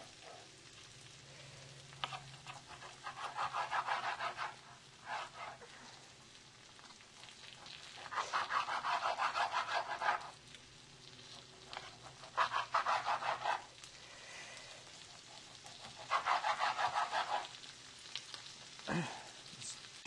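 A knife sawing back and forth through raw chicken breast on a cutting board, in four short bursts of quick scraping strokes.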